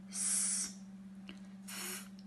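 A woman making two unvoiced, breathy 'th' phonics sounds, forcing air out between tongue and teeth to sound out a word: the first about half a second long, the second shorter near the end. A steady low hum runs underneath.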